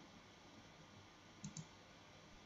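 Near silence broken by two faint, quick clicks of a computer mouse button about a second and a half in.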